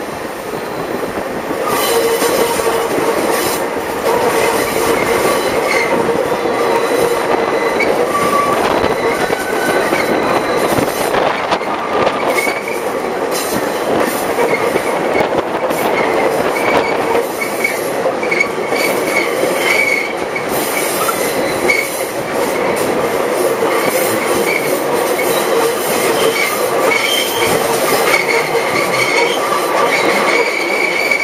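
Wheels of a steam-hauled passenger train running on the rails, heard close to the coaches: a steady rumble and clatter, getting louder about two seconds in. Through it a high-pitched wheel squeal keeps coming and going, the flanges grinding against the rails.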